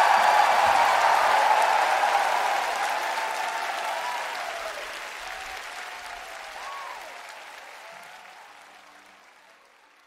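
Concert audience applauding and cheering at the end of a live band performance, fading out steadily to silence.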